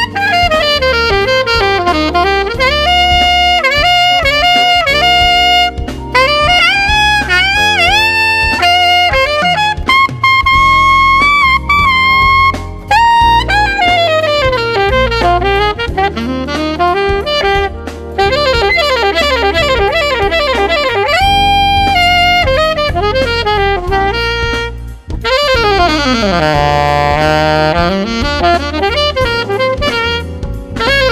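Selmer Reference 54 alto saxophone playing an R&B melody over a backing track, with quick runs, bent notes and long held high notes. The player judges that its pitch sags flat as it climbs into the upper register, while the low notes stay in tune.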